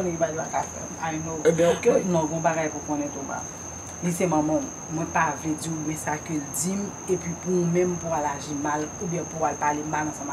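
Crickets trilling in one unbroken high-pitched tone, under a woman's speech.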